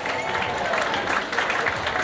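Audience applauding, a steady patter of many hands clapping.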